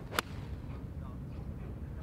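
A golf club strikes a teed-up ball in a tee shot, one sharp crack about a fifth of a second in, over low wind rumble on the microphone.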